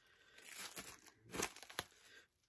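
Faint crinkling of Mylar comic-book sleeves as a stack of bagged comics is handled, in a few short bursts with a small click near the end.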